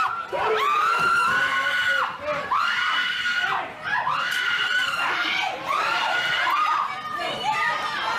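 A crowd shouting and screaming during a shoving scuffle, with a run of high, strained yells, each held about a second, one after another every second or so.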